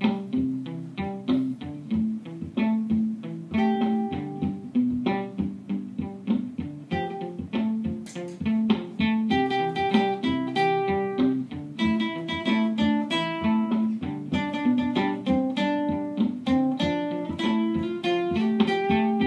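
Guitar jam played through a Line 6 POD HD500X looper: a repeating looped part with low bass notes, with rhythmic plucked and strummed guitar layered on top, filling out with more high notes about halfway through.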